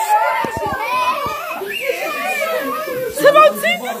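Excited high-pitched voices of several young people shouting and chattering over one another in celebration, with a few dull bumps about half a second in.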